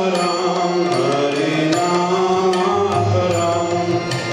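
Devotional kirtan music: a man chanting a bhajan over sustained harmonium chords, with mridanga drum strokes keeping the rhythm.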